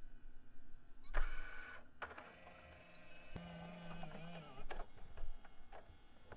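Quiet mechanical whirring with scattered clicks and a short burst of hiss about a second in.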